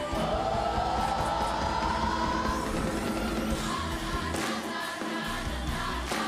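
Youth choir singing over backing music, with a voice gliding up into a long held note over the first couple of seconds.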